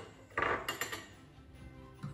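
A short clatter of kitchen utensils about half a second in, followed by a few light clicks, over faint background music.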